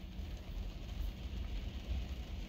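Faint background inside a car cabin: light rain on the car's windows and roof, a soft even hiss over a low steady hum.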